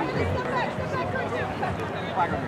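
Indistinct voices of several people talking and calling out at once, players and sideline on an open field.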